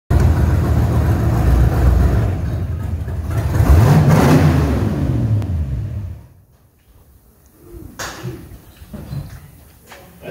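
Engine of a chopped 1951 Jeep running loud and low as it drives in, revving up briefly about four seconds in and then falling off. It is shut off about six seconds in, and one sharp click follows near eight seconds.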